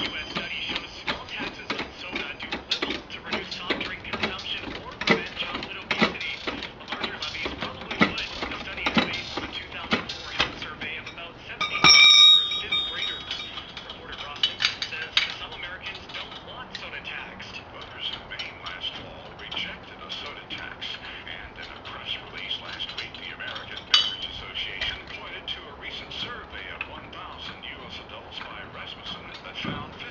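Steel lug nuts and a lug wrench clinking and rattling during a wheel change, with a louder ringing metal clang about 12 seconds in and another sharp knock near the end.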